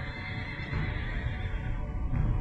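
A horse whinnying, one falling call lasting about a second and a half, over the song's backing music.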